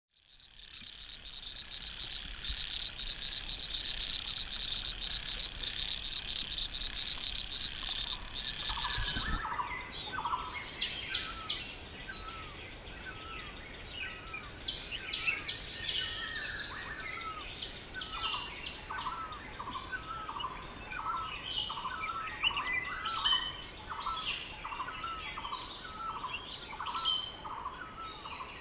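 Insects trilling steadily in a dense chorus, cut off abruptly about nine seconds in, followed by birdsong: one bird repeating a short falling call over and over at a steady pace, with other birds chirping higher.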